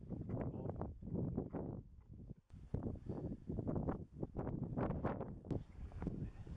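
Wind gusting over the camera microphone on an exposed mountain ridge, an uneven low rumble that swells and fades, with a brief lull about two and a half seconds in.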